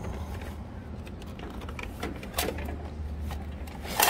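Handling noise from a vending machine's bill acceptor as its stack of paper bills is taken out: a few light clicks and a rustle about two and a half seconds in, over a steady low hum.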